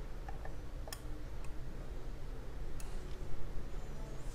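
A few light, irregular clicks of a digital caliper being set against a guitar fret to measure its height, the metal jaws tapping the fret and strings, over a low steady hum.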